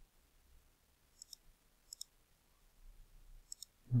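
Faint computer mouse button clicks: a close pair a little over a second in, another about two seconds in, and a pair near the end.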